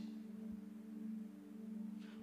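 A steady low hum of several held tones with no speech, and a brief soft low thump about half a second in.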